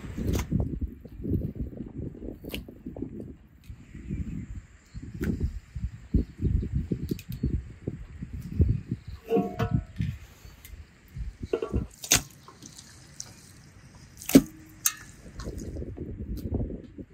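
Raw beef chunks being handled and dropped into metal and enamel bowls: irregular soft, wet slaps and squelches, with a few sharp clinks of metal.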